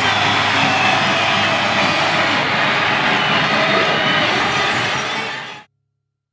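Stadium crowd of football supporters cheering and shouting in a loud, steady roar that fades out quickly about five and a half seconds in.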